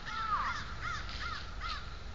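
A bird calling repeatedly: about five short calls in quick succession, each rising and falling in pitch.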